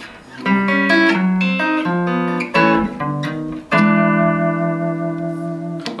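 Fender Telecaster electric guitar playing a 12-bar blues turnaround lick in A: a quick run of single notes, then a final chord held and left ringing for about two seconds, stopped just before the end.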